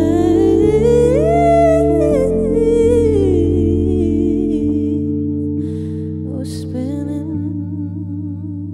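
Live band music: a wordless vocal line, hummed or sung without words, over sustained stage-keyboard chords and a low bass. The low end drops out about five seconds in, leaving the voice and keys.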